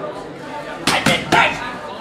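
Boxing gloves striking a trainer's pads: a quick combination of sharp smacks about a second in, the last one the loudest.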